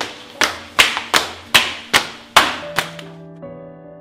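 Hurried footsteps on stairs, about eight sharp steps in quick succession, stopping about three seconds in, over a soft music bed that carries on.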